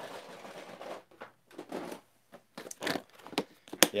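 Rummaging through packaging: crinkling and rustling, then several scattered knocks and clicks, a sharp one near the end.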